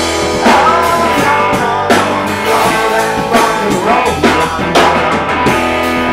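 Live rock band playing a song: electric guitars, bass guitar and drum kit together at full volume.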